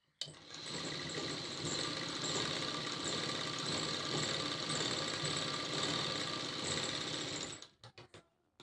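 Sewing machine running steadily, stitching a long line through fabric. It starts just after the beginning and stops about half a second before the end, followed by a few light clicks.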